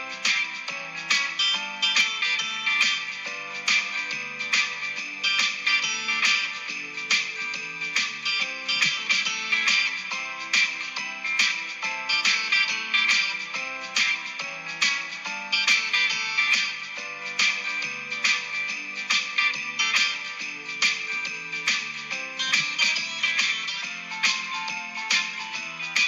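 Guitar music, strummed in a steady rhythm.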